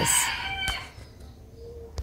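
A rooster crowing, its call fading away within the first second.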